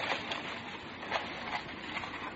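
Faint steady hiss of an old radio-drama recording, with a couple of soft clicks about a third of a second and just over a second in.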